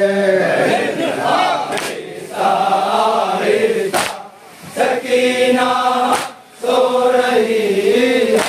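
A group of men chanting a nauha, a Shia lament, in unison, with sharp strikes of hands on chests (matam) landing about every two seconds, three times.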